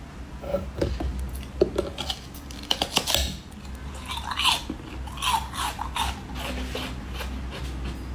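A mouth biting into and chewing a moulded block of coloured ice, with sharp cracks and crunches that come in clusters, then chewing.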